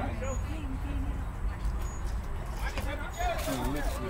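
Ballfield ambience: faint, indistinct voices over a steady low rumble.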